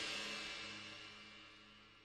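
The last chord of a rock band's song ringing out after the final hit: a cymbal wash and low held notes dying away, gone faint by about a second in.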